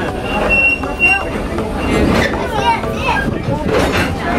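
Steady rumble of an open tour-train car rolling along its track, with people's voices talking over it.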